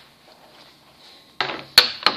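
A toy wrestling championship belt being handled: quiet at first, then rustling and a sharp hard clack near the end.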